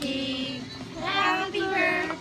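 A high singing voice holding two long, drawn-out notes, the second beginning about a second in.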